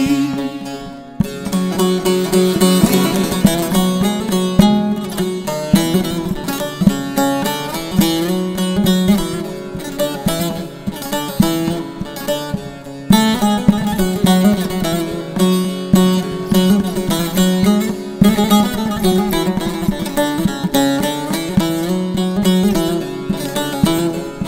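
Instrumental interlude of a Turkish folk song (türkü), led by plucked string instruments playing a melodic phrase, with no singing. The phrase starts again about halfway through.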